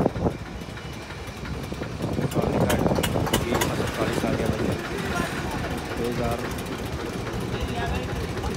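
People talking in the background over a low, steady engine rumble, with a few sharp clicks about three seconds in.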